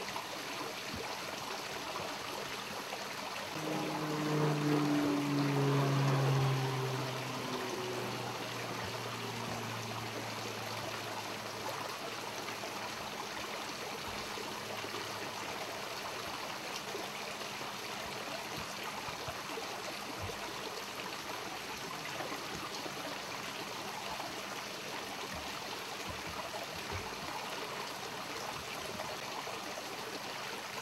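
Water trickling steadily into a garden pond. About four seconds in, a low hum with a slightly falling pitch swells, then fades away over several seconds.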